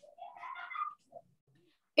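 A faint pitched call, rising in pitch and lasting under a second.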